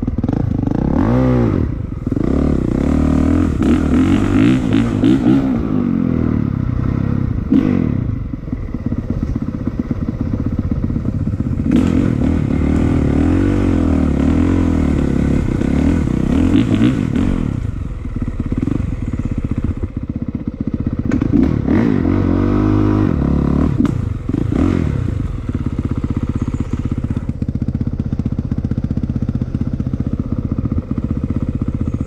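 Dirt bike engine revving up and down over and over as it is ridden along a rough trail, with knocks and rattles from the bike bouncing over the ground.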